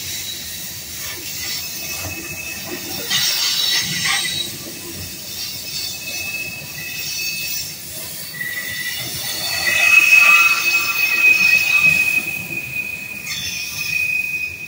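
Covered hopper cars of a grain train rolling past, their steel wheels squealing on the rail in thin, steady high tones that come and go, loudest and longest about ten seconds in.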